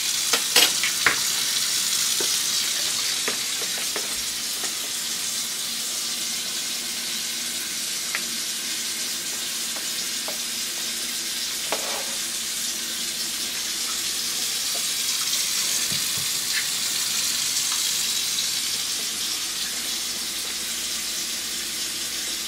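Oil sizzling steadily in a hot frying pan for pancakes, with a few sharp clicks in the first second.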